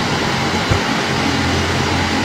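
Steady background noise: a low hum under an even hiss, with no speech.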